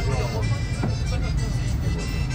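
Steady low rumble of a tourist road train heard from inside its open carriage, with music playing over it and a few voices near the start.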